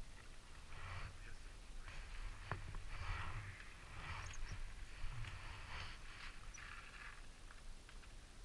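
Irregular crunching and scuffing on loose gravel, about once a second, as a dirt bike is shuffled and rolled across the ground with its engine not heard running, and one sharp click about two and a half seconds in.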